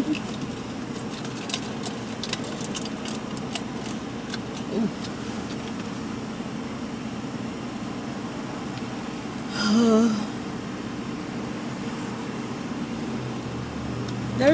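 Car engine idling steadily, heard from inside the cabin, with a run of light clicks and jingles over the first six seconds or so. A brief hummed vocal sound from a woman comes about ten seconds in.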